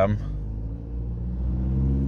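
VW Passat CC's CBB 2.0 TDI diesel engine, heard from the driver's seat, being revved from idle up toward about 2000 rpm for the DPF temperature-sensor check; its steady hum rises in pitch and grows louder through the second half.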